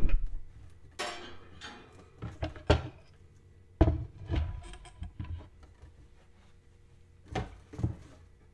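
A wire cooling rack and a round wooden serving board handled and set down on a countertop: a series of separate knocks and light clatters, the loudest a little under three and four seconds in, with quiet gaps between.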